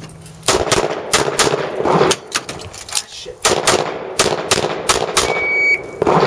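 Semi-automatic pistol fired in quick succession, about a dozen sharp shots in two fast strings with a brief pause about three seconds in. A short electronic beep from the shot timer sounds near the end.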